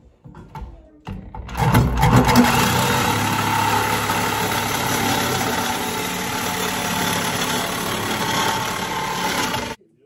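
Reciprocating saw cutting through the metal tabs of a licence-plate bracket held in a vise. It starts just over a second in, runs steadily for about eight seconds and stops suddenly.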